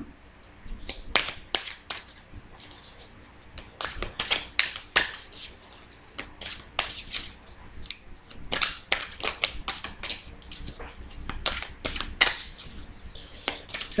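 A large tarot card deck being shuffled and handled, a long irregular run of sharp card clicks and slaps, some in quick clusters.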